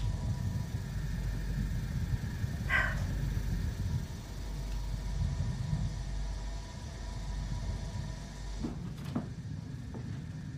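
Steady low rumble of a horror film's sound track, with one brief higher-pitched sound about three seconds in and two faint knocks near the end.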